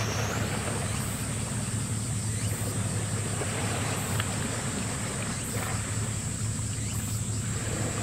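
Harbour ambience: a steady low rumble across the water, with a thin, constant high-pitched whine above it that steps up in pitch just after the start and then holds.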